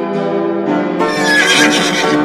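Upbeat music with a horse whinnying over it, the whinny starting about a second in and lasting about a second.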